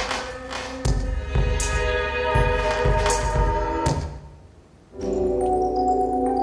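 Computer-generated music soundscape from the 80Hz data sonification of a painting: deep drum-like hits under held chords, fading out about four seconds in. About a second later the next painting's soundscape starts, with held tones and high chiming notes.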